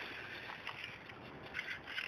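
Faint steady background noise with a few soft handling sounds as the plastic door-handle assembly is moved about.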